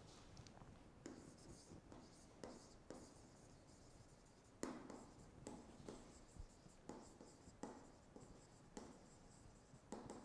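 Faint taps and scratches of a stylus writing on a tablet screen: irregular short strokes, the sharpest tap about halfway through.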